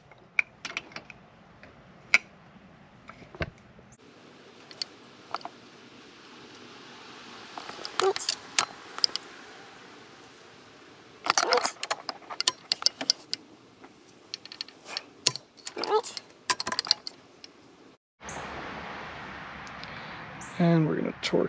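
Ratcheting torque wrench on a long socket extension tightening the jet ski's 12 mm exhaust manifold bolts to 26 ft-lb: scattered metallic ticks, then several runs of rapid clicking as each bolt is pulled down. Near the end a steady hiss takes over.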